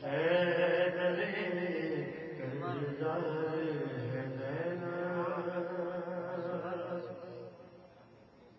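A man's voice in a melodic chanted recitation, holding long notes that bend and waver; it fades away near the end.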